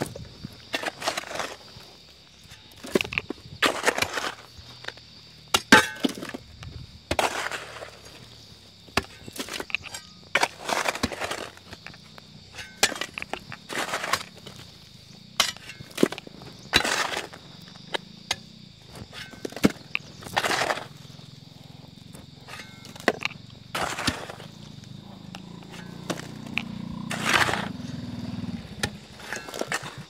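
Hand tools striking rocky earth and stone: a pick and an iron bar chipping, prying and breaking up rock, in sharp irregular blows about once a second.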